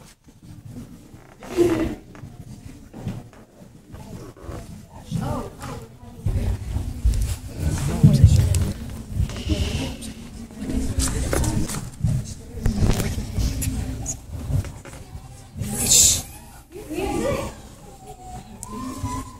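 Indistinct murmur of voices with irregular low rumble from a handheld phone microphone being moved, and a short sharp rustle near the end.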